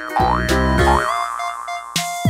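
Cartoon 'boing' sound effects over bouncy background music: two quick rising pitch glides in the first second over a bass line, then a short held tone and a few short plucky notes.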